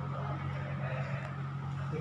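Steady low hum in the room, with faint indistinct voices in the background.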